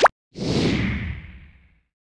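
Logo-sting sound effects: a quick rising pop, then a whoosh with a low rumble that fades away over about a second and a half.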